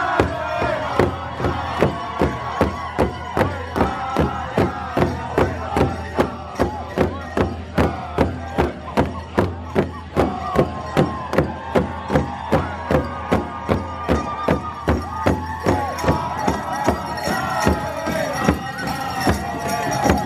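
A Native American drum group singing together over one large drum that several men beat with sticks in unison, a steady beat of about two to three strokes a second under high, wavering voices.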